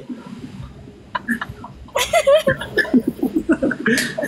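A man laughing heartily, breaking into a fast run of repeated 'ha' bursts about halfway through.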